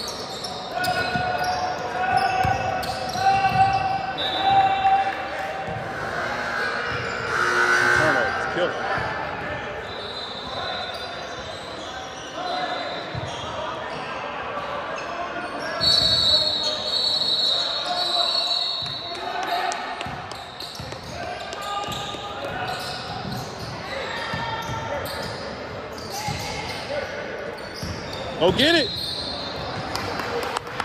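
Indoor basketball game sounds echoing in a large gym: a ball dribbling on the hardwood court, short squeaks of sneakers, and players' and spectators' voices and shouts.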